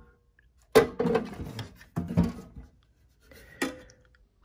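Car engine computers in metal mounting brackets being picked up and set down in a toolbox drawer: a handful of sharp knocks and clatters with a short metallic ring, the first about three-quarters of a second in and the last near the end.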